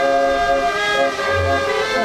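Fairground organ playing held chords of pipe notes, with a deep bass note sounding about halfway through.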